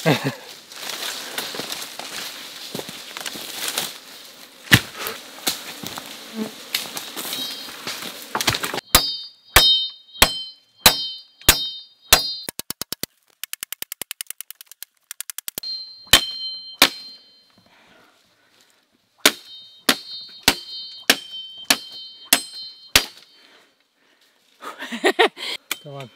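Machete chopping a wooden pole: sharp blows, each trailed by a short high metallic ring, coming in runs about one or two a second, with a quick rattle of light taps around the middle. The first third is a steady hiss with scattered knocks.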